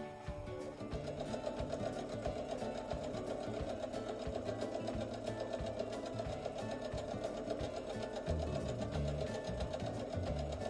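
EverSewn domestic sewing machine stitching a straight seam through two layers of cotton quilting fabric, its motor running steadily with an even ticking from the needle.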